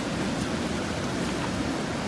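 Ocean surf washing onto a beach: a steady, even rush of breaking waves.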